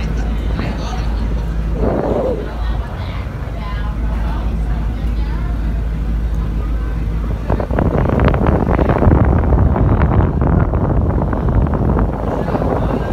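Car ferry's engine running with a steady low drone under faint passenger chatter, then wind buffeting the microphone from about seven and a half seconds in.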